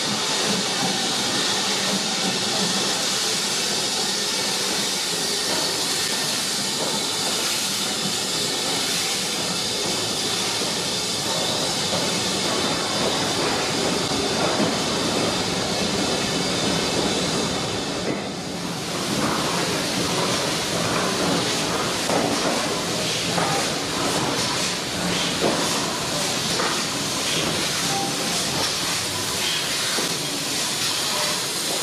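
Steam tank locomotives hissing steadily at close range: first BR Standard Class 4 tank 80097 with its train, and after a brief break about two-thirds through, GWR 4200-class 2-8-0 tank 4270 with steam escaping low at its front end. Light knocks sound through the hiss in the later part.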